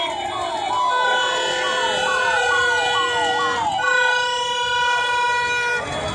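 A conch shell (shankh) blown in two long, steady blasts, the first starting about a second in and the second running until near the end, over a repeating falling-pitch whistle and crowd noise.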